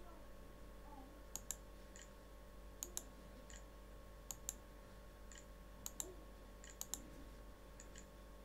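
Faint computer mouse button clicks, mostly in quick pairs, about five pairs spaced roughly a second and a half apart, as keys are clicked one by one on an on-screen keyboard.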